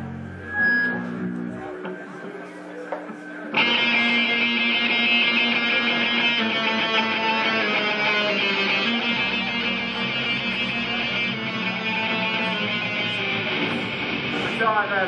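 Live heavy metal band starting its opening song: quiet low held notes, then electric guitars come in suddenly and loud about three and a half seconds in and play on steadily.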